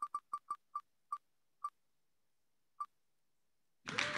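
Wheel of Names spinning-wheel tick sound, electronic clicks that slow and spread out as the wheel comes to rest, the last tick nearly three seconds in. A recorded applause sound for the winner starts just before the end.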